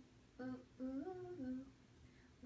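A person humming a short wordless tune: a brief note, then a phrase of notes that rises and falls back about a second in.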